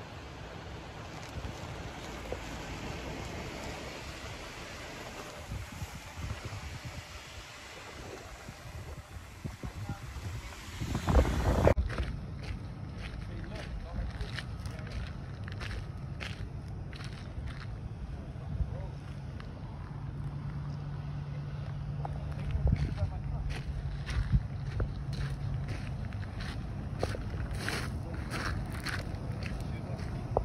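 Wind buffeting the microphone over the faint sound of off-road vehicle engines, with a loud low rumble of wind about eleven seconds in. After a cut, a steady low engine hum with scattered clicks and crunches.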